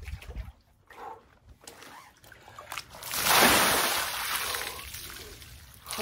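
Ice water splashing as a person sinks into a full inflatable cold-plunge tub, starting suddenly about three seconds in. Water then spills over the tub's rim and pours onto the ground, fading away.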